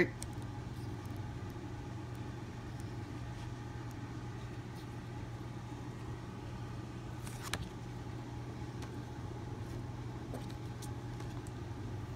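Steady low hum in the background. Thin pages of a small paperback storybook are flipped by hand, with one short sharp paper rustle about seven and a half seconds in.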